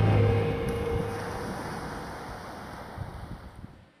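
Soft wash of ocean surf fading out steadily over a few seconds, with a last held note of music dying away in the first second or so.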